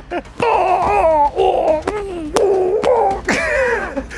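Men laughing and making long, gliding playful vocal sounds, with a few sharp knocks in between.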